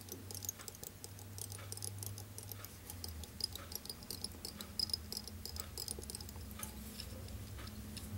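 Faint, irregular light ticks and clicks from thread and fingers working on a small fly-tying hook in the vise, over a low steady hum.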